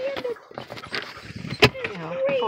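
Knocks and rustles of people and a dog moving about inside a car, with one sharp click about one and a half seconds in.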